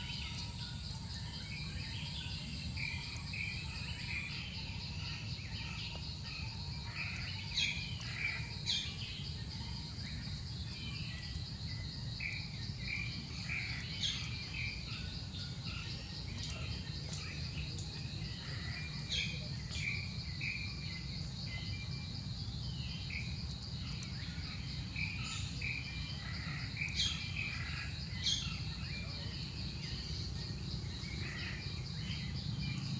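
Steady high insect trill, with many short bird chirps and several sharp falling whistles scattered throughout, over a low steady rumble of background noise.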